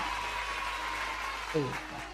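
A pause in a man's speech filled by steady background hiss with a faint, thin, steady tone. A short spoken syllable comes near the end.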